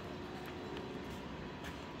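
Steady low background room noise with a faint hum, no distinct events.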